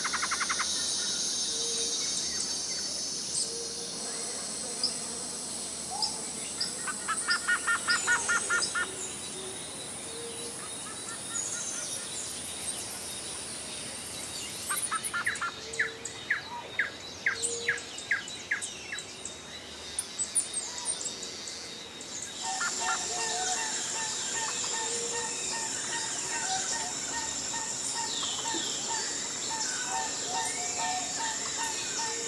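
Birds calling and chirping, with rapid trills of short repeated notes about eight seconds in and again around sixteen seconds, over a steady high insect buzz.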